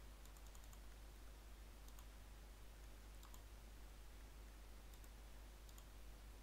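Faint computer mouse clicks over near-silent room tone with a steady low hum. A quick run of clicks comes in the first second, then single clicks every second or so, and a pair near the end.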